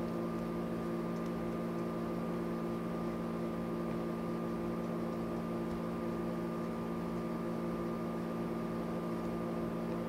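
Steady machine hum made of several even tones over a faint hiss, unchanging throughout.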